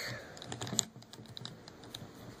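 Soft, irregular small clicks and rubbing as hands move the jointed limbs of an S.H. MonsterArts King Kong plastic action figure.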